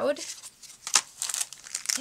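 Thin clear plastic packaging crinkling as it is handled, with one sharp tap about a second in.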